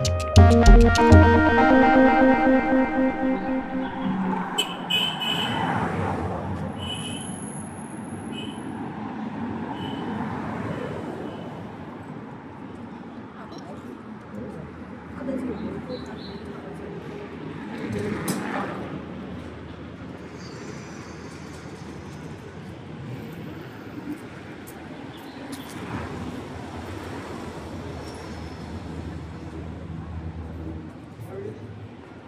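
Electronic music with a heavy beat fades out over the first few seconds, giving way to city street ambience: a steady hum of traffic with vehicles and scooters passing, one a little louder about 18 seconds in.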